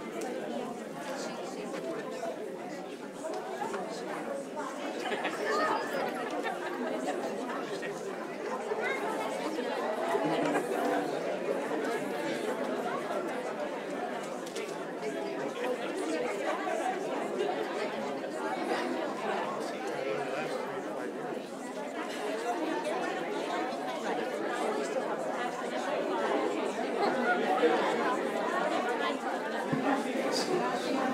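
Indistinct chatter of many people talking at once in a large meeting hall, with no single voice standing out.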